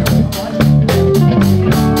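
Live electric blues band playing between vocal lines: drum kit keeping a steady beat under bass guitar and electric guitars, with some bent guitar notes.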